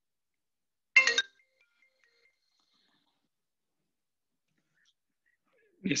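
A mobile phone ringtone sounds in one short, loud burst of several tones about a second in, then stops.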